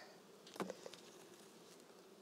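Honeybees buzzing faintly around an open hive, with a light tap about half a second in and a smaller one just after as a wire mesh screen is set down on the hive box.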